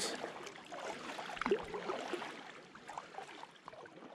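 Faint water sounds around a kayak on the water, with a few small knocks, the clearest about a second and a half in, fading away near the end.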